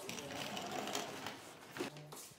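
Glazed wooden sliding door rolling along its track with a fast rattle, then a knock near the end.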